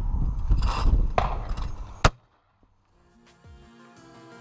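Handling noise and a low rumble from a shooter moving an over-and-under shotgun just after a shot, ending in one sharp snap about two seconds in, the loudest sound. After a second of silence, quiet background music begins near the end.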